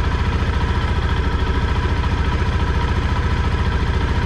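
KTM 390 Adventure's single-cylinder engine idling with a steady, even low pulse, shortly after being started.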